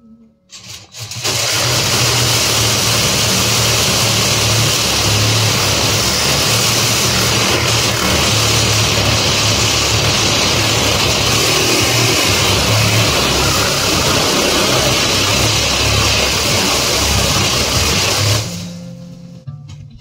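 DeWalt reciprocating saw running steadily under load as its blade cuts through a roll of welded steel grid wire fencing, with a buzzing throb. It starts about a second in and stops near the end.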